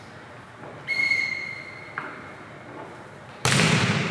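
A referee's whistle blown once about a second in, a single steady tone lasting about a second. Near the end a volleyball is struck, a sudden loud hit that echoes in the gym.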